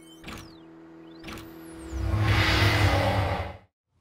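Synthesized intro-sting sound effects: two sharp swishes and falling and rising pitch sweeps over a steady electronic hum. About two seconds in they build into a loud whooshing rumble that cuts off suddenly just before the end.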